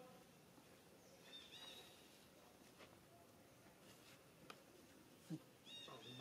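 Near silence with faint, short high chirps from a small animal or bird, once about a second and a half in and again near the end, and a couple of soft clicks.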